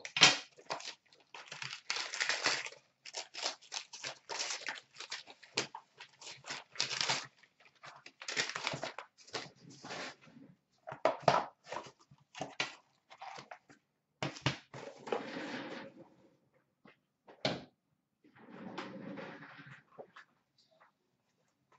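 Gold wrapping paper being torn off a cardboard box and crumpled, in a quick run of rustling tears and crinkles. It thins out to occasional handling of the white cardboard box and its contents.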